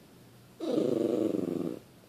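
A schnauzer lets out one low, rough, drawn-out grumbling moan lasting just over a second, starting about half a second in: the dog's complaining whine at being left while her owner goes to work.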